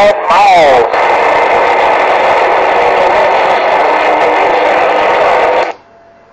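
CB radio speaker putting out a loud, steady rush of static with faint steady tones, which cuts off suddenly near the end as the incoming signal drops.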